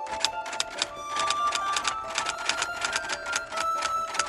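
Typewriter keystroke clicks in a rapid, uneven run of about seven a second, with a short pause near the end, over soft background music with held tones.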